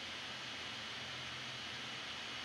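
Quiet, steady hiss of the recording's background noise (room tone), with a faint steady high whine underneath and no other sound.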